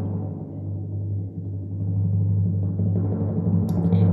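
Dramatic suspense music cue: a sustained timpani roll that swells steadily louder.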